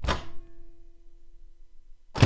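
A single sharp clunk at the microwave door, then the Frigidaire over-the-range microwave starts running with a steady, even hum.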